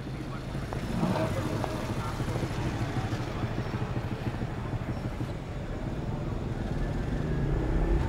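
Night city street ambience: traffic noise with indistinct voices, slowly growing louder.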